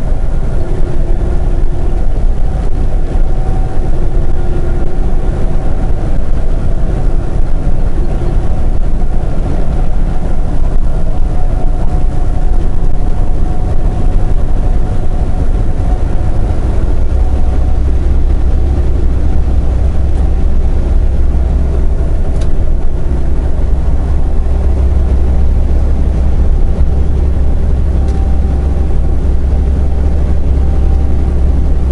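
A semi truck's engine and road noise heard inside the cab while cruising at highway speed: a steady low drone that grows heavier a little past halfway.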